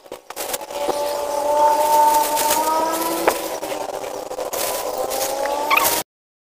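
A motor vehicle engine running steadily, its pitch drifting slightly up and down, with a couple of light clicks over it.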